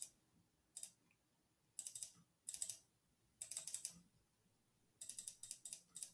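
Clicking on a Chromebook while working in a painting app: short clusters of several quick clicks, with a new cluster about every second.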